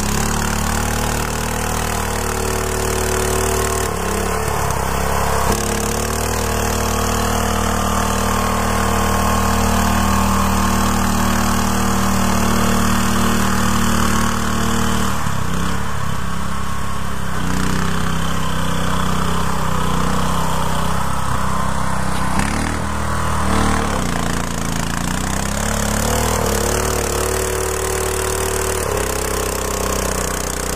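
Small garden tractor engine running under load in thick mud. It holds a steady note, and its pitch drops and picks up again a few times: about 4 seconds in, around 15 seconds, and again around 23 seconds.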